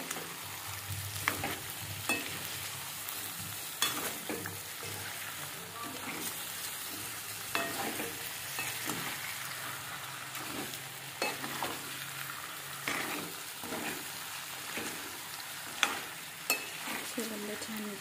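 Chicken pieces in thick masala sizzling in a metal kadhai while being stirred with a steel spoon, the spoon scraping and clinking against the pan every few seconds.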